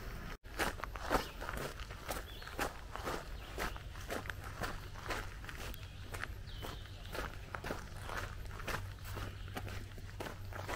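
Footsteps of a hiker walking at a steady pace on a gravel trail, about two steps a second.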